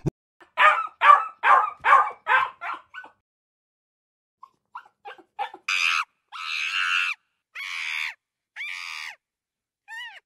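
Animal calls: a run of about six short calls roughly 0.4 s apart, then after a pause four longer, noisier calls.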